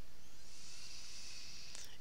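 A steady, breathy hiss held for about two seconds: a long exhale into a close headset microphone.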